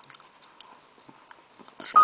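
Low room noise with a few faint, scattered clicks and a faint steady tone; a voice starts speaking near the end.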